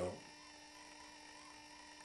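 Quiet room tone with a faint steady hum, just after a man's word ends in the first moment.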